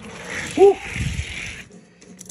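A man's short "woo" about half a second in, over a steady rushing hiss that stops abruptly near the end.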